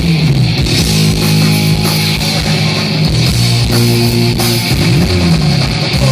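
Live hard rock band playing loud: distorted electric guitars, bass guitar and drums, with sliding notes near the start and again about five seconds in.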